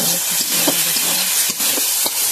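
Ground masala paste sizzling in hot oil in an iron kadhai, a steady loud hiss, with a couple of sharp scrapes of the spatula stirring it.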